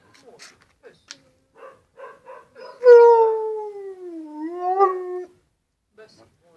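Siberian husky giving a few short whining calls, then one long howl about three seconds in that slides slowly down in pitch and lifts a little just before it stops, lasting about two and a half seconds.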